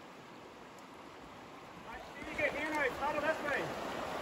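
Faint steady rush of river water running over shallow rapids; from about halfway, voices shouting in the distance.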